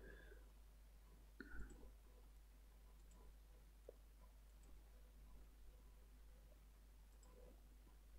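Near silence with a few faint clicks of a computer mouse, the clearest about a second and a half in.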